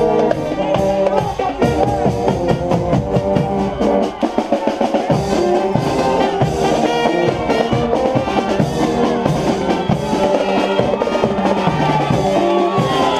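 Marching brass-and-percussion band (fanfarra) playing on the move: trumpets, bugles and sousaphone sounding sustained brass lines over snare and bass drums keeping a steady beat.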